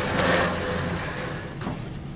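Rustling, shuffling handling noise close to the microphone as something is moved out of the way, loudest at first and fading over the next second or so.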